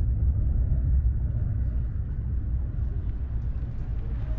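Steady low rumble of a moving vehicle, heard from inside its cabin while travelling at speed.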